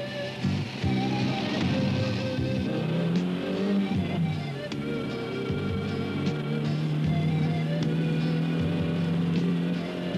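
Film soundtrack music playing, with melodic notes over a low line; a long low note is held through the second half.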